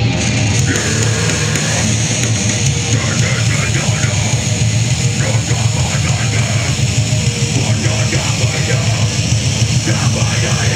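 A grindcore band playing live: loud, dense distorted guitars and drums with vocals, unbroken and heavy in the low end.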